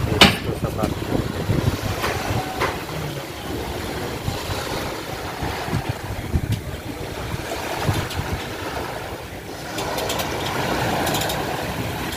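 Outdoor shoreline ambience: a fluttering wind rumble on the microphone over small waves washing onto the concrete slipway, with one sharp knock just after the start.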